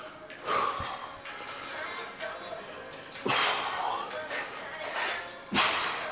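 Background music with three sharp, forceful exhalations two to three seconds apart, a man breathing out hard on each repetition of a cable exercise.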